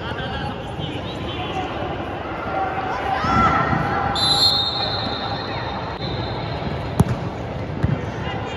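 Echoing sports-hall ambience of a youth football match: distant shouts of players and spectators, a steady high whistle about a second long near the middle, and a sharp knock of a ball being struck about a second before the end.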